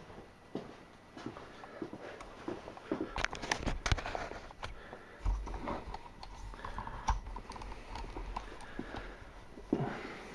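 Handling noise as the camera is moved around a workshop toward a lathe: scattered light clicks and knocks, with a low rumble from about halfway through.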